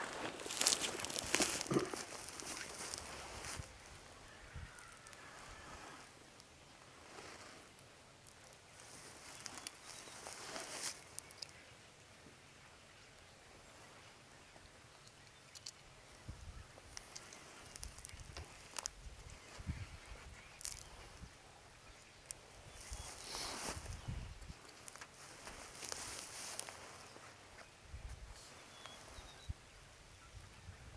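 Rustling, scuffing steps on dry leaves and handling of gear while a black powder muzzleloading rifle is being loaded, with a few small clicks. The rustle comes in several short spells.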